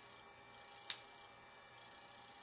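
A single sharp click about a second in, as a cast shell part is pressed and snaps into the holes of a small custom-cast toy cassette figure.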